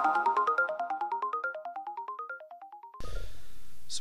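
Intro jingle: a fast run of short chiming notes climbing in pitch, about eight a second, fading out over the first three seconds. About three seconds in, a faint steady room hiss starts.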